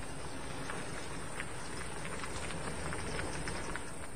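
Steady background noise of an outdoor field recording, with faint scattered ticks and knocks.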